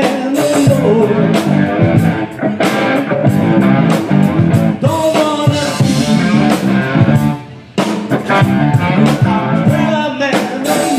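Blues-rock trio playing live: electric guitar lead with bent notes over bass guitar and drum kit. The band drops out briefly about seven and a half seconds in, then comes back in.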